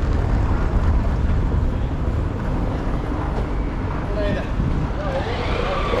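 A motorcycle passing close by, its engine rising in pitch over the last second or two, over a steady low rumble.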